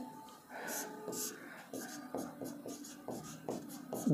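A marker writing on a board: a series of short scratchy pen strokes as a word is written.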